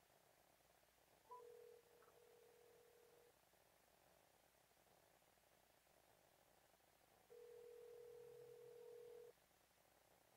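Faint telephone ringback tone: a steady low tone held for about two seconds, twice, with about four seconds between, the sound of a call ringing and waiting to be answered.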